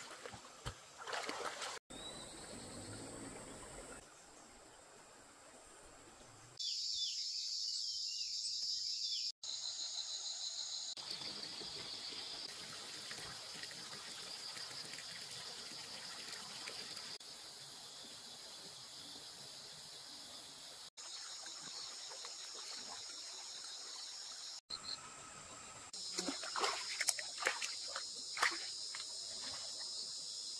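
Shallow stream water trickling and sloshing across several abrupt cuts, with a run of splashes near the end.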